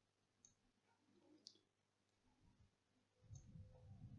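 Near silence with a few faint clicks of a computer mouse button.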